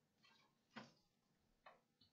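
Near silence with a few faint clicks, the two sharpest just under a second apart.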